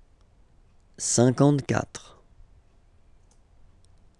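A man's voice saying a French number word once, about a second in, then a couple of faint computer-mouse clicks near the end as the slide advances.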